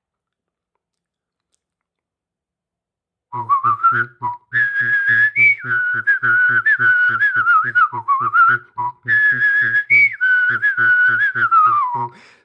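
A person whistling a wavering, lilting melody while voicing a low note underneath in short repeated pulses, about three a second. It begins about three seconds in, after silence.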